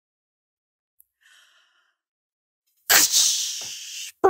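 Near silence, then about three seconds in a person lets out a loud, sharp burst of breath that trails off over about a second.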